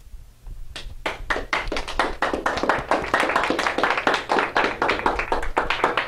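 Audience applauding: a few claps less than a second in, quickly filling out into steady applause.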